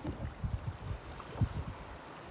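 Wind buffeting the microphone in an uneven low rumble, over choppy water lapping at a kayak, with one short knock a little after halfway.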